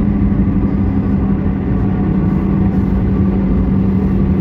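Steady road and engine noise inside a moving car's cabin: a low rumble with a constant hum.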